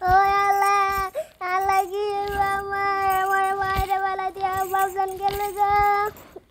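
A young girl's voice holding a long, steady high note. It breaks briefly about a second in, then is held again for more than four seconds.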